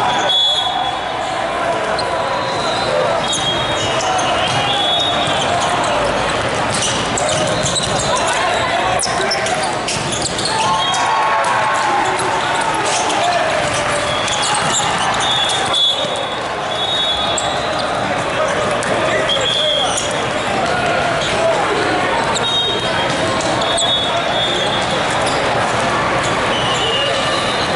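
Busy multi-court indoor volleyball hall: a constant babble of players' and spectators' voices, broken by frequent sharp smacks of volleyballs being hit and short high-pitched squeaks, all echoing in the large room.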